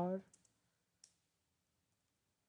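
A few faint, short clicks of computer keyboard keys as the asterisk of an SQL query is typed.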